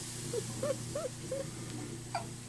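Four quick, short vocal sounds about a third of a second apart, each rising and falling in pitch, over a steady low hum.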